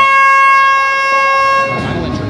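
Horn blast marking the end of the rumble countdown clock for the next entrant: one long, loud, steady note that cuts off near the end.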